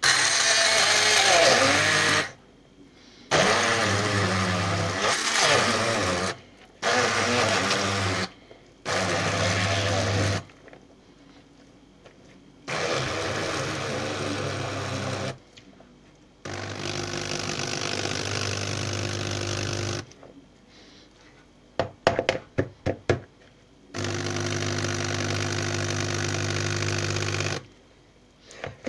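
Scarlett 750 W hand (immersion) blender running in about seven bursts of one to four seconds, switched on and off repeatedly as it works cooked beans and fried vegetables into a paste. A few short knocks fall in one gap near the end.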